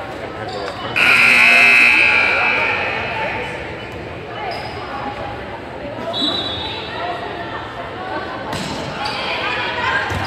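Volleyball rally in a school gym: a shrill referee's whistle blast about a second in, then the ball being hit and players' shoes and voices, all echoing in the hall.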